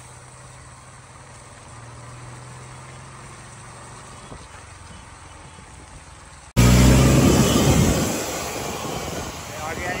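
Steady low hum of a vehicle engine heard while driving slowly along a flooded road. About six and a half seconds in, the sound changes abruptly to a much louder rushing noise with a heavy low rumble, which fades over the next couple of seconds.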